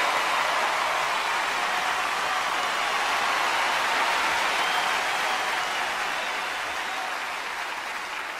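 Large arena audience applauding in a standing ovation, a dense steady clapping that gradually fades toward the end.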